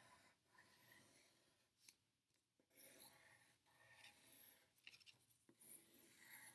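Faint scratching of a wooden pencil drawing heart outlines on paper, in several strokes with short pauses between them.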